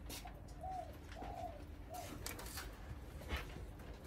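Faint cooing of a bird in the background: a few short, soft, arching hoots in the first half.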